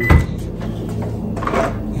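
Trunk lid of a 2018-2022 Honda Accord being unlatched and opened: a sharp clunk just after the start, then a softer knock about a second and a half in as the lid swings up.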